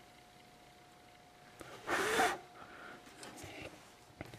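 Quiet room with a faint steady hum, broken about halfway through by one short, sharp breath through the nose.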